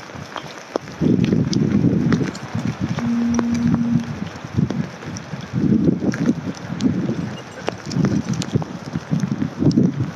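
Footsteps tramping over the woodland floor, with twigs cracking underfoot and uneven rumbling from wind or handling on the phone's microphone. A short steady low tone comes in about three seconds in.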